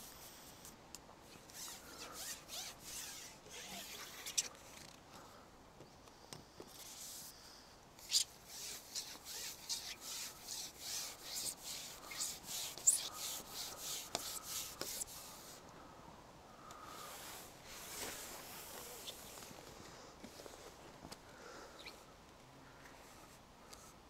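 Carbon fishing pole being shipped out by hand, its sections sliding and rubbing against hands and rest in a faint run of quick rasping strokes, busiest midway.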